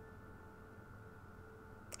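Near silence: faint room tone with a steady low hum and a few thin, faint steady tones.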